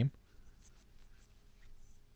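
A man's speech trails off at the very start, then near silence: room tone with a few faint, soft sounds.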